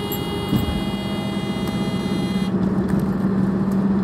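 Car driving, heard from inside the cabin: steady road and engine noise, with a short bump about half a second in and a steady low hum from then on.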